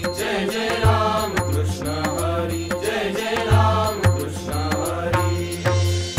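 Marathi varkari devotional song: a chorus chants over a steady beat of deep drum strokes and bright cymbal clicks.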